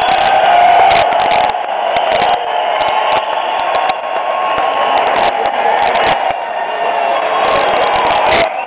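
Large concert crowd cheering and shouting, with hand claps close by.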